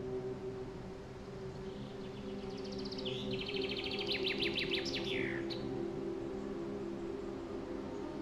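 A songbird sings one rapid trilling phrase of about three seconds, ending in quick falling notes, over soft, steady, sustained ambient music tones.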